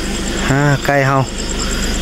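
A man says two short words over the steady low hum of an idling vehicle engine, while a cricket chirps in quick, even, high-pitched pulses.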